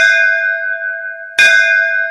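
A bell struck twice, about a second and a half apart, each strike ringing on with a clear, steady tone that slowly fades.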